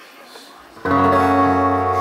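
Steel-string acoustic guitar: the opening strummed chord of a song comes in suddenly a little under a second in and rings on, after a quiet room murmur.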